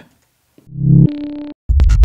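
Electronic bass samples auditioned one after another. First, a short pitched synth bass sound starts about half a second in, settles on a steady note and stops abruptly. Then, near the end, a bass loop starts with heavy low end and rapid repeated attacks.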